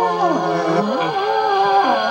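Television soundtrack of a 1960s sci-fi show heard through an old console TV's speaker: dramatic score with long gliding, wavering tones, mixed with groaning, growling cries.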